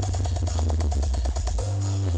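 Electronic dance music played very loud through a large outdoor truck-mounted sound system, with heavy bass and a fast, even run of drum hits through the middle.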